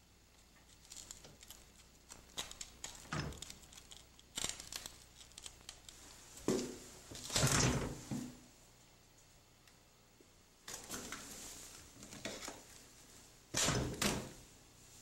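Rustling, scraping and knocking as someone squeezes in through a narrow opening, with the camera being handled close to the surfaces. The loudest scrape comes about halfway through, and a sharp knock comes near the end.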